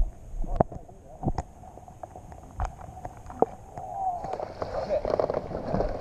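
Muffled underwater rumble from a camera held below the water's surface, with several sharp knocks as it is handled. About four seconds in it comes up into open air, bringing a brighter hiss and a faint voice.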